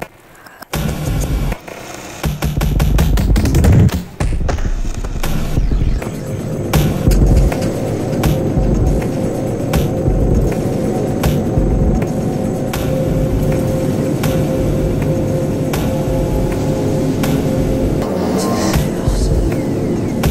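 Electronic music: dense clicking percussion over a low, shifting pulse, with a brief quiet drop right at the start and a held tone coming in about six seconds in.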